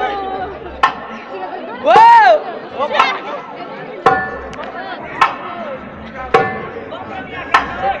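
Derbak (goblet drum) struck in single sharp, ringing beats about once a second, over crowd chatter. About two seconds in comes a loud call that rises and falls in pitch.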